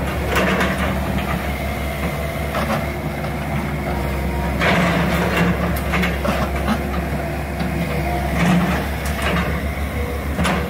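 Diesel engines of two excavators, a John Deere 160C and a Caterpillar mini excavator, running steadily under load. Over them come repeated crunches and knocks as the excavator buckets break up and scrape house rubble and foundation stone, loudest about halfway through and again near the end.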